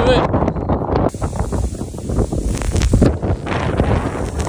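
Strong sandstorm wind blasting across a phone microphone: a loud, gusting rumble of wind noise.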